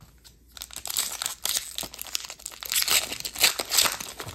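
Foil wrapper of a 2023-24 Upper Deck Artifacts hockey card pack being torn open and crinkled by hand. The dense crackling starts about half a second in and is loudest in the last second or so.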